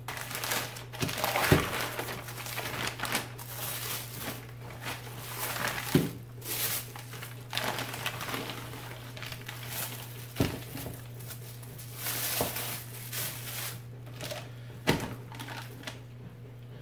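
White butcher paper crinkling and rustling as a wrapped package of meat is opened and handled by hand, with a few sharp knocks as the ribs and package meet the countertop.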